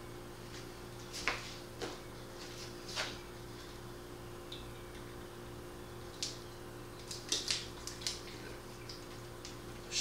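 A plastic drinking-water bottle being handled, uncapped and dosed with food dye: scattered light clicks and crinkles, most of them bunched about six to eight seconds in, over a steady low hum.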